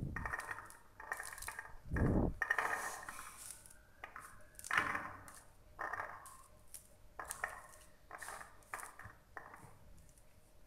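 A pomegranate being pulled apart by hand: the rind creaking and tearing, and loose seeds dropping onto a plate with small clicks, in short irregular bursts. The loudest is a dull knock about two seconds in.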